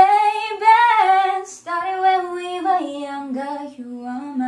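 A woman singing solo without accompaniment, holding long notes that slide up and down in pitch.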